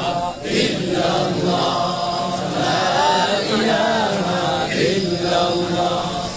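A man's voice chanting in long, drawn-out melodic phrases through a microphone and loudspeaker.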